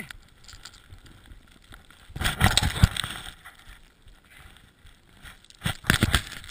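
Skis sliding and scraping over snow, with wind buffeting the microphone; the loudest burst comes about two seconds in, and it picks up again near the end.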